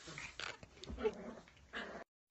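A small long-haired dog making a few short, quiet vocal sounds close to the microphone.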